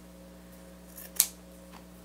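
Scissors cutting through a rag: a faint snip about a second in, then one sharp snip just after.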